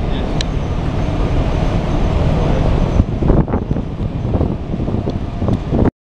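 Steady, loud background noise of ship's engine-room machinery, with a few faint muffled sounds in the second half. It cuts off suddenly just before the end.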